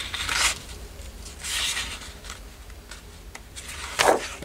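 A hand rubbing and sliding a sheet of scrapbook paper, with two soft swishes, one near the start and one about a second and a half in.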